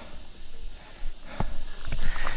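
A hiker's footsteps and scuffs on rock and gravel, with a sharp knock about two-thirds of the way through and another near the end, over a low rumble.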